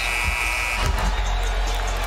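Arena end-of-period horn sounding one steady high tone that cuts off under a second in, marking the end of the second quarter, over a crowd cheering a buzzer-beating three.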